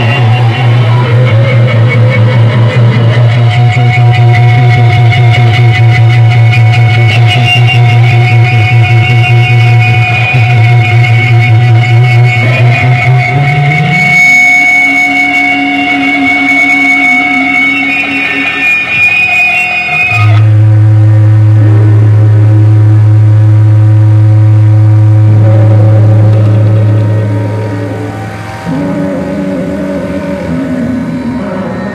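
Loud amplified experimental music: an electric guitar run through effects pedals holds long droning tones. A low drone slides up in pitch about 13 s in, and another loud low drone sets in around 20 s and fades near the end.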